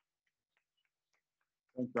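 Near silence with a few faint, irregular ticks, then a man's voice begins speaking near the end.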